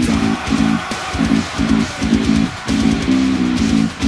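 Electric bass guitar played along with a heavy nu-metal backing track: distorted guitars, bass and drums chug out a riff in short stabs with brief gaps, about two a second.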